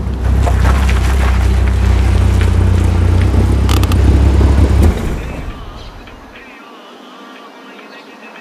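Car engine running with a deep, steady rumble that fades away from about five seconds in, leaving a quiet, thin background.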